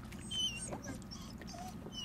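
Young retriever puppy whining: two short, high-pitched whines, one near the start and one near the end.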